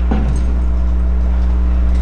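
Steady low background hum filling a pause in the talk, with a brief trailing voice sound right at the start.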